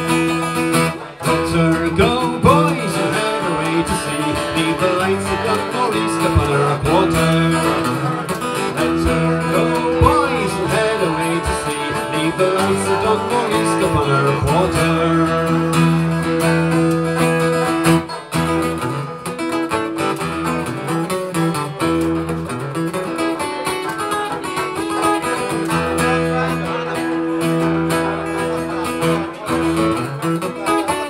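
Acoustic guitar played as an instrumental break in a folk song, with steady strummed chords ringing on.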